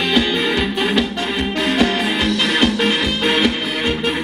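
A live band playing Thai ramwong dance music, with a steady drum beat under melodic instrument lines.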